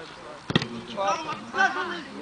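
A football kicked once, a single sharp thump about half a second in, followed by men shouting on the pitch.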